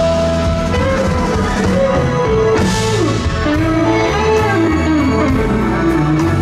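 Live rock band playing an instrumental passage: a hollow-body electric guitar carries a melodic line over bass and drums, with a cymbal crash about halfway through.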